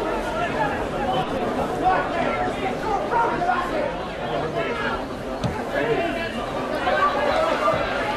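Spectators' chatter: many voices talking and calling out at once in an open-air stand, with one short thump about five seconds in.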